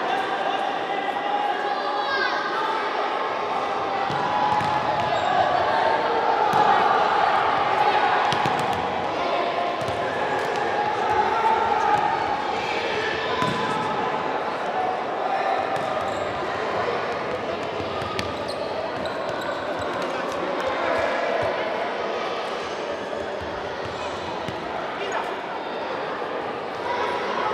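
An indoor football being kicked and bouncing on the wooden floor of a sports hall, with short sharp knocks scattered through, under voices calling out across the reverberant hall.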